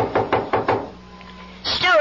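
About five quick knocks on a door in the first second, a radio-drama sound effect; near the end a woman's voice calls out briefly.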